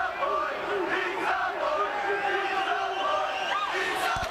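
Basketball arena crowd yelling and chanting, many voices at once, keeping up a steady din during a free throw.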